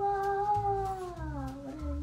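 A miniature dachshund crying: one long, high whine that slides slowly down in pitch over about two seconds.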